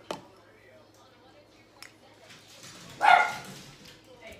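A spoon clicks once against a bowl as a ketchup glaze is stirred, then about three seconds in comes one short, loud pitched call, the loudest sound here, which could be a dog's bark.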